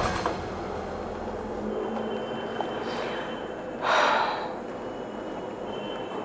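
A woman's deep sigh about four seconds in, over a low steady background hum with a faint high whine.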